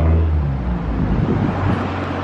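A car engine idling, a steady low hum with no revving.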